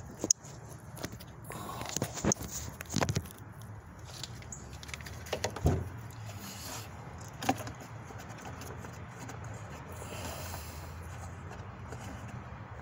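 Scattered knocks, clicks and rustles of a phone being handled and set down against the car, with a steady low hum in the background.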